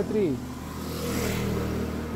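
A truck engine idling with a steady low hum.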